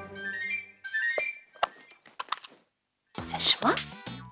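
Short dramatic background-music sting of quick rising notes, followed by a few sharp clicks and knocks, then a brief silence; voice and music come in near the end.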